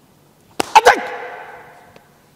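About half a second in, a sudden loud burst: three quick sharp slaps on the card table, mixed with a man's loud shouted exclamation that fades out over about a second.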